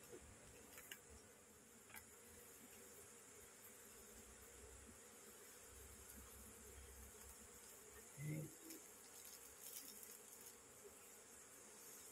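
Faint steady buzzing of an Asian honeybee (Apis cerana) colony crowding over comb that is being lifted out of its nest, with a brief low sound about eight seconds in.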